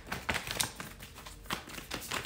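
Tarot cards being handled and drawn from the deck: a run of light, irregular clicks and taps as the cards flick against each other.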